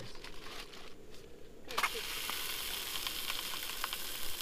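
Aluminium foil crinkling as a foil-wrapped fish fillet is handled. Then, a little under two seconds in, the packet is set on a hot stainless steel plate over a canister stove and starts sizzling steadily.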